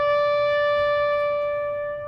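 Solo trumpet holding one long, steady high note that begins to fade away near the end.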